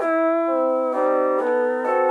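Keyscape LA Custom C7 cinematic piano chords with a softened attack, sustained notes that change chord about half a second in and again at one second. Pitch-bend automation makes the notes waver slightly in pitch.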